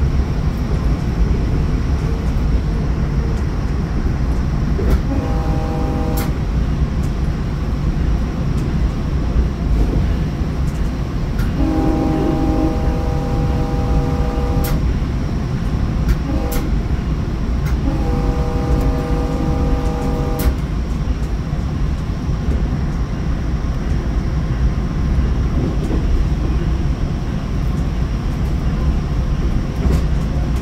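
Steady running rumble of a Sounder commuter train at speed, heard from inside a passenger car. Over it the train's horn sounds four times: a blast about five seconds in, a long blast, a brief toot and another long blast, the long-long-short-long pattern sounded for a grade crossing.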